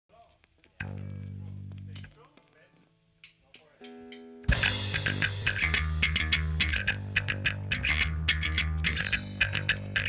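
Skate-punk band starting a song live: a single low bass-guitar note rings for about a second and stops, four quick clicks and a short guitar chord follow, then at about four and a half seconds the full band comes in with drums and cymbal crash, electric guitar and bass guitar, playing on at a steady loud level with another crash near the end.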